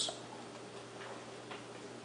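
Quiet room tone: a faint steady low hum with a few faint, scattered ticks.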